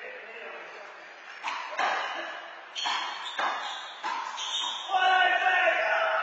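Rubber handball smacking off gloved hands, the wall and the floor of an indoor court: about six sharp hits, half a second to a second apart, each echoing in the hall. Voices rise near the end.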